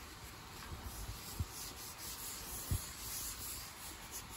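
A crumpled tissue rubbed back and forth across a wood-look floor, a steady scrubbing hiss, with a couple of soft low knocks as the hand bumps the floor.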